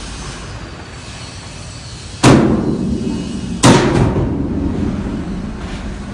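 Two loud, heavy blows about a second and a half apart, each ringing and echoing off the corrugated steel walls of a shipping container.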